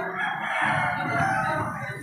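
A rooster crowing, a long held call over a background of crowd noise.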